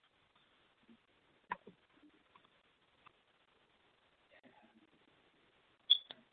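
A quiet pause holding a few faint clicks, with one sharp click near the end.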